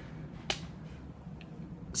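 A single sharp click about half a second in, over faint room tone.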